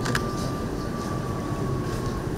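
Steady low room rumble with a thin steady whine running through it, and one sharp camera shutter click just after the start.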